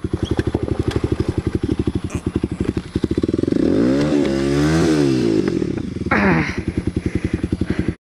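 Kawasaki KLX supermoto's single-cylinder four-stroke engine chugging at low speed in rapid, even firing pulses, revving up and back down once around the middle.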